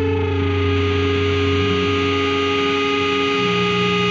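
Hardcore punk music: distorted electric guitar with effects holding sustained notes, the chord changing about two seconds in and again near three and a half seconds.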